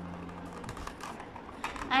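Fingers pressing and handling a thin plastic mountain mould, making soft scattered clicks and crinkles.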